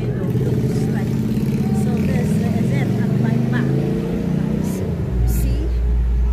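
A motorcycle engine running close by, with a steady low drone. A deeper rumble comes in about five seconds in.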